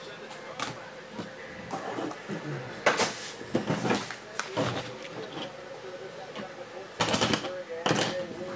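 Handling noises at a table: a few short rustles and knocks, the loudest about three seconds in and just before the end, with faint voices underneath.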